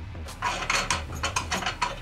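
Resin vat being seated in a Creality Halot Sky resin printer and its thumbscrew knob turned: a rapid run of small clicks starting about half a second in.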